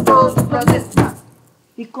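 Drums and voice of an acoustic children's-song band. A rope-tensioned wooden drum and a smaller drum are struck about every third of a second for the first second under the end of a sung line, then stop and fall almost silent. A voice starts the next line near the end.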